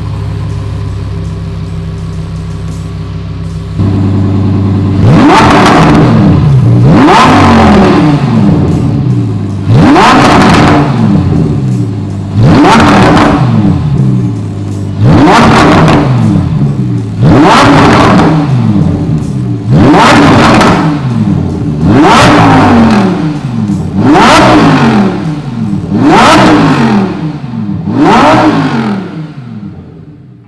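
Lamborghini Huracán Performante's naturally aspirated 5.2-litre V10 idling for a few seconds, then blipped in about eleven sharp revs, each climbing quickly and dropping back to idle, about every two seconds. The sound fades out near the end.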